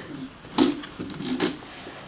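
Plastic Lego bricks clicking and knocking as the model is handled and its parts are moved on a table: a sharp click about half a second in, then a few smaller clicks around a second and a half.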